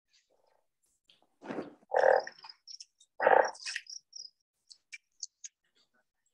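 Frog croaking from a film soundtrack: three short, loud croaks in the first half, the last two about a second apart, followed by a few faint high clicks.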